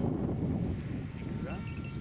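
Strong wind buffeting the microphone, a steady low rumble.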